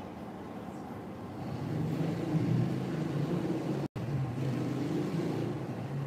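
A low engine-like rumble that swells about a second and a half in and holds steady, with the sound cutting out for an instant just before four seconds.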